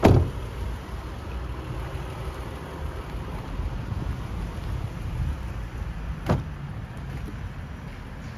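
A Toyota Alphard minivan's door shutting with a solid thud at the start, and a second, shorter clunk of a door or latch about six seconds in, over a steady low rumble.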